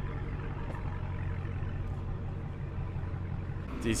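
Steady low hum of city street traffic, with the even drone of an idling engine underneath.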